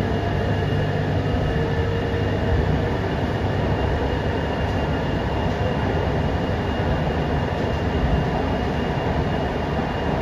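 Mumbai Metro MRS-1 train (BEML-built, Hitachi silicon-carbide inverter driving permanent-magnet motors), heard from inside the car as it runs steadily along the line. A constant low rumble of wheels and running gear carries a thin, steady high whine over it.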